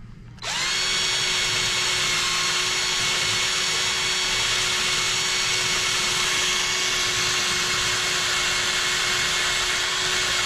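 Surgical power drill spinning up about half a second in and then running with a steady whine, drilling over a guide wire through the navicular bone to make the tunnel for a posterior tibial tendon transfer.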